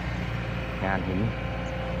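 An engine running steadily, a low even hum.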